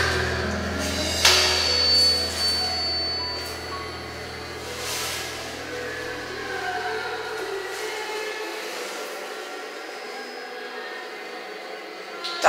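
A ballad karaoke backing track ending: its last low chord holds and fades out about eight seconds in. There is a sharp click about a second in, then faint room noise.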